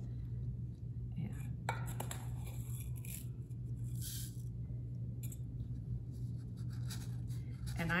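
Crushed walnut shells rattling as they are scooped from a ceramic bowl and trickled through a plastic funnel into a small fabric pincushion, in a few short bursts over a steady low hum.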